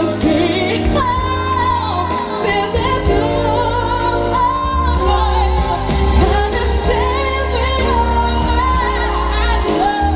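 A high solo voice sings a live pop song through a PA, holding long notes with vibrato, over electric keyboard chords and bass.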